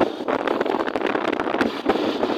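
Wind rushing and buffeting over a phone microphone on the move along a road, a loud, steady, noisy roar with no voice in it.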